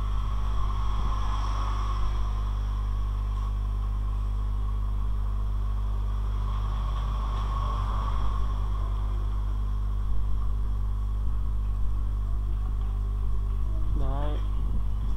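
Steady, loud low electrical mains hum on the recording, unchanging throughout, with a few faint ticks in the second half.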